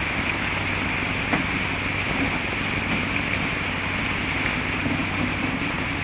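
Steady hiss and low hum of an early-1930s film soundtrack, with no other sound standing out.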